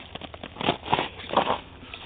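Footsteps crunching through ice-crusted snow, several uneven steps in quick succession.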